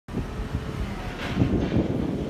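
Wind buffeting the microphone over the rumble of traffic on a nearby road, with a louder swell about halfway through.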